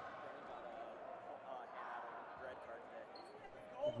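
Indistinct chatter of many people echoing in a large gymnasium, a steady murmur. A nearer voice starts just at the end.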